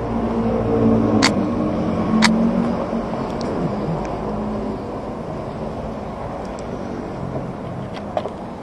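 Street traffic: a steady rumble of nearby vehicle engines, louder for the first few seconds and then easing. Two sharp clicks about a second apart cut through it a little after the start.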